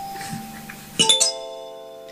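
Hugh Tracey kalimba: a note fading out, then about a second in several metal tines plucked almost together, ringing on as steady bell-like tones that slowly die away.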